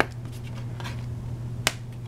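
Two sharp clicks about a second and a half apart as hands handle a paper backing card over a metal Blu-ray steelbook case, with a steady low hum underneath.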